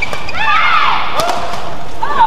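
The end of a badminton doubles rally. A shuttlecock is struck, then from about half a second in comes a run of squeaks and cries that rise and fall in pitch, from court shoes on the mat and players' voices.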